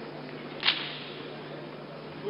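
A single short, sharp snap about two-thirds of a second in, over a steady low hum.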